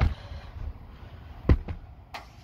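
Handling knocks on a handheld phone as it is swung about: a thump at the start and a louder sharp knock about one and a half seconds in, with low rumbling handling noise between them.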